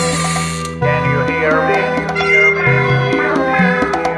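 Hard techno track: layered synth lines over a pulsing bassline. A hissing sweep cuts off under a second in and the full mix comes back in louder.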